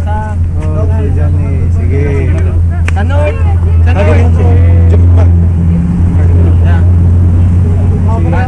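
A loud, steady low rumble, with people talking in a group over it.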